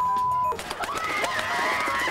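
A steady single-pitch censor bleep covering a swear word, cutting off about half a second in. Then a stretch of high, wavering cries.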